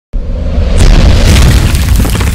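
Loud cinematic boom sound effect that hits suddenly, then a deep sustained rumble with a rushing swell about a second in and crackling debris near the end.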